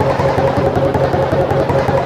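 Heavily processed, layered logo audio remixed into music: a steady low buzz under a fast, evenly repeating stutter, with several copies of the sound stacked at once.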